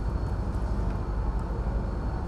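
Steady low rumbling background noise with a faint, high, steady whine above it, and no voice.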